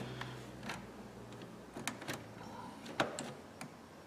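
Small plastic clicks of automotive blade fuses being worked with a fuse puller in an underhood fuse box: about half a dozen separate clicks, the sharpest about three seconds in. The fuses are being pulled one at a time to find the circuit behind a parasitic battery drain. A faint low hum runs under the first half.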